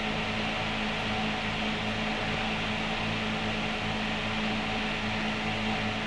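Steady low hum with hiss, even and unchanging: the background noise of an old film soundtrack between lines of narration.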